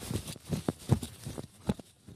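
Footsteps of a person running on grass: a quick series of soft thumps, the loudest about a second in and near the end.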